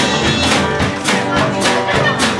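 Live instrumental passage of a country-rock jam, led by a strummed acoustic guitar with a steady beat of about four strokes a second.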